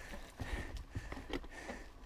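Mountain bike rolling along a dirt trail: a faint low rumble with scattered light clicks and rattles from the bike.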